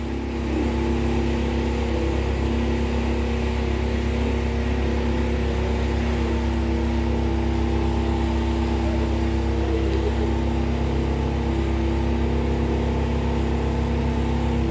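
An engine idling steadily: a constant low rumble with a couple of steady humming tones above it, unchanging throughout.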